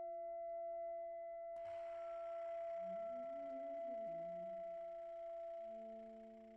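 Saxophone quartet holding long, pure-toned notes that overlap in a quiet contemporary chord. About a second and a half in, a breathy air hiss joins the held tones, a low saxophone line moves up and down in the middle, and new low notes enter near the end.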